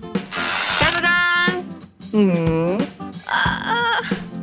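Cartoon background music with a character's wordless vocal sounds over it, including one drawn-out voice about two seconds in that dips in pitch and rises again.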